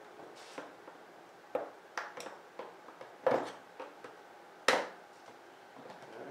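Sharp clicks and knocks, five or so, the two loudest a little after three seconds and near five seconds in, from a small hand tool working the latch clips on a Harley-Davidson V-Rod's airbox top.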